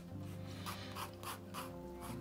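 Red pencil sketching on drawing paper: a run of short scratchy strokes, about three a second, as the outline of a head is drawn. Soft sustained background music plays underneath.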